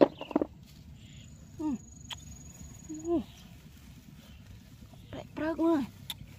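A woman's voice: a word at the start, two brief vocal sounds in the middle and a short phrase near the end. Under it runs a low steady outdoor rumble and, for about two seconds, a faint thin high-pitched tone with a single click.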